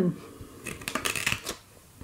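Handling noise: a quick run of light clicks and rustles, lasting about a second, as a sleeved arm brushes across a metal baking tray.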